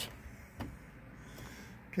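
Quiet steady background noise in a parked car's cabin, with one faint click about half a second in.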